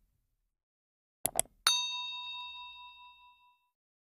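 A quick double mouse-click sound effect about a second in, then a single bright bell ding that rings out and fades over about two seconds: the sound effect of a notification bell.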